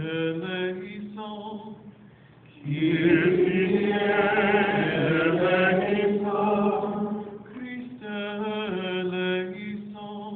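Liturgical chant in call and response: a single voice chants a line, then from about three seconds in a larger, louder body of voices answers, and a single voice takes up the chant again near the end. It is the sung penitential litany of the Mass.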